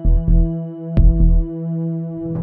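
Background music: a held synthesizer drone with a low double thump about once a second, like a heartbeat.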